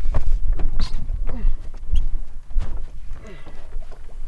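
Knocks and handling noise as a large musky is laid on a bump board, a fish-measuring board, on the boat deck. Wind rumbles on the microphone throughout.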